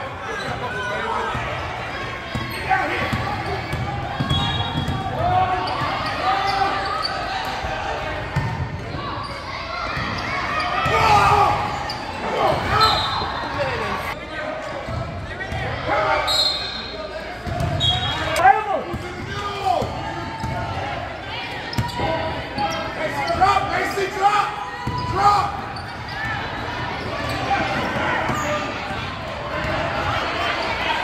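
A basketball being dribbled on a hardwood gym floor, with players and spectators calling out and chattering throughout, echoing in a large gym.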